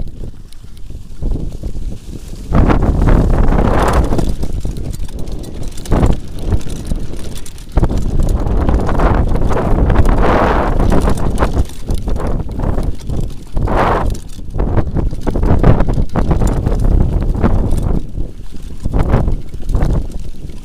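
Mountain bike rolling fast down a rough grassy trail: tyre rumble and rattling of the bike over bumps, under heavy wind noise on the camera microphone that surges and drops several times.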